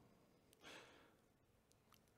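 Near silence, with one faint, short breath from the speaker at the microphone a little over half a second in.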